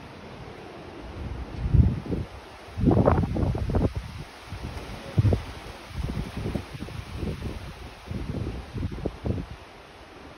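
Wind buffeting the microphone in irregular low gusts, strongest around two to three seconds in and again about five seconds in, over a steady rustle of wind in the trees.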